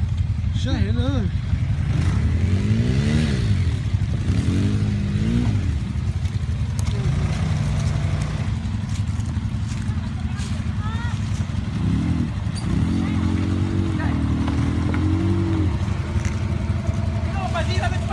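ATV (quad) engines idling steadily, with the throttle opened several times so the engine note rises and falls: once about three seconds in, again around five seconds, and longer and more unevenly near the end.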